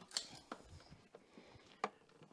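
Quiet, with a few faint, short clicks and knocks; the sharpest comes near the end.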